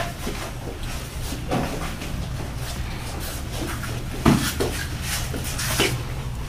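Sparring in padded gear on foam mats: a few dull thuds of strikes and footfalls, the loudest about four seconds in, over a steady low hum.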